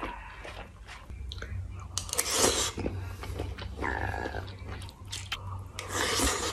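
Close-miked chewing and mouth sounds of a person eating, irregular and wet, with a louder noisy stretch about two seconds in.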